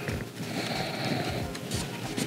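Soft, irregular knocks and handling noise from a large panel of thin wooden wall planks as it is lifted and set back down on a workbench.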